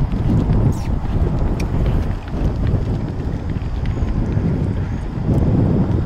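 Wind buffeting the microphone, with the dull hoofbeats of a horse moving on sand footing as it passes close by.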